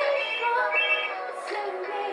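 A mobile phone ringtone playing a melody of high electronic tones, repeating in short phrases, with music.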